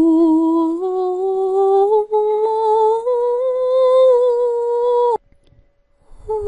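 A woman humming one long drawn-out tone that climbs slowly in pitch, with a brief dip about two seconds in, then cuts off abruptly about five seconds in.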